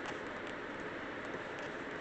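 Steady, even background hiss with no distinct sounds.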